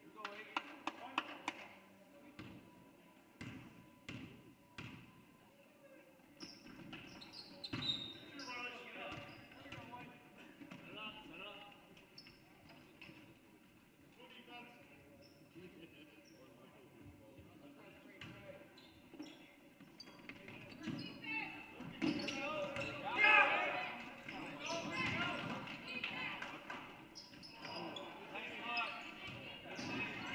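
A basketball bounced several times on a hardwood gym floor in the first few seconds as a player dribbles before a free throw. Then voices and shouts from players and spectators, loudest a little past the middle as play runs.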